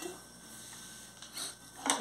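A serrated knife and fork cutting into a soft cooked stuffed carrot on a glass plate, with a short rasping scrape partway through and a sharp click near the end.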